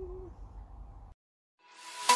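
A woman humming a wavering note with closed lips, ending just after the start. Low room hum follows, then a cut to silence, and music fades in near the end.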